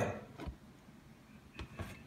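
A few faint knocks and taps as a cardboard model kit box is moved aside on a workbench: a soft low thump about half a second in, then two quick taps near the end.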